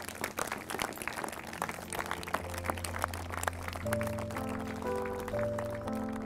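A small crowd applauding, dense clapping at first that thins out by about five seconds in. Under it runs background music of slow, held chords that change every second or so.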